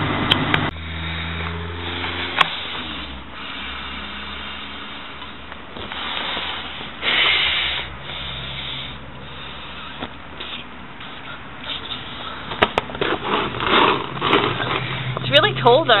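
A person blowing up a clear plastic inflatable pool by mouth: a run of uneven, hard breaths, leaving her out of breath. A car engine runs steadily underneath for the first couple of seconds.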